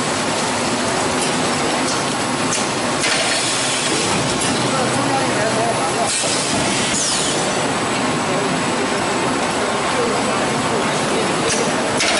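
Bottled-water line's film wrapping packer and bottle conveyors running: a steady, loud mechanical clatter and rumble, with two bursts of hiss about three and six seconds in.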